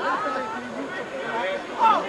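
Several people's voices talking over one another at a football ground, with one loud shout near the end.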